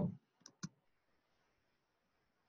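Two quick clicks at the computer, about a fifth of a second apart, as a notebook cell is set running.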